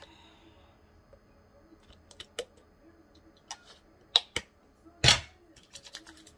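A few sharp plastic clicks and taps from handling a squeeze tube of charcoal face scrub, scattered over the last four seconds, with one louder knock about five seconds in.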